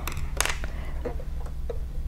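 A few light clicks and taps of a metal ruffler presser foot being picked up and handled at the sewing machine, over a steady low hum.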